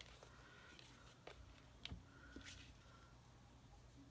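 Near silence: room tone with a few faint clicks and light taps as craft supplies, a liquid glue bottle and paper die-cuts, are handled on a desk.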